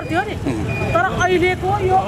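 A woman speaking loudly and emphatically in short, rising and falling phrases.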